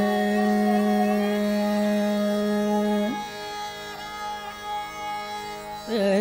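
Slow Hindustani classical khayal in raag Bageshri: a long held note, with sarangi and harmonium following the voice, over a tanpura drone. The note ends about three seconds in, the music goes softer, and a new note slides in near the end.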